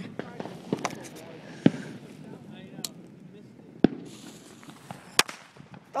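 Firecrackers popping: a few sharp cracks spaced a second or two apart, with fainter pops between them.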